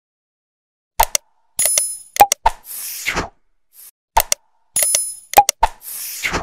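Subscribe-button animation sound effect: quick mouse-click pops, a bell ding and a whoosh. The sequence plays twice, about three seconds apart, after a second of silence.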